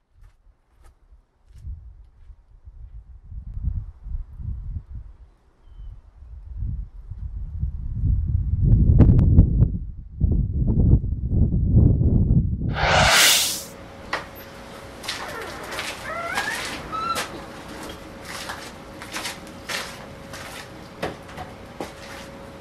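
Gusts of wind buffeting the microphone, a rising and falling low rumble that grows loudest shortly before the sound changes abruptly. After that comes a quieter room with a steady thin hum, scattered clicks and a few faint chirps.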